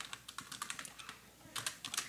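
Faint computer keyboard typing: a run of irregular key clicks as a short formula is typed into a text editor.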